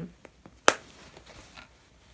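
A single sharp click of a snap fastener being pressed shut on a canvas tote bag's front pocket flap, about a second in, with faint rustling of the canvas around it.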